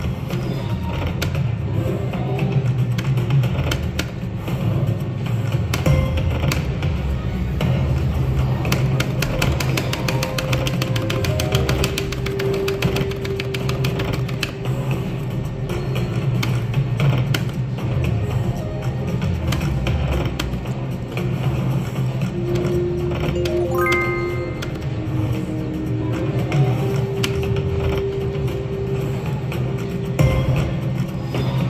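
Wolf Run Eclipse slot machine playing its game music through repeated spins, with clicking reel sounds. A quick run of rising notes sounds about 24 seconds in.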